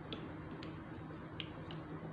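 Four short, light clicks as a plastic ruler and pen are handled and set down on a drawing sheet, over a steady low room hum.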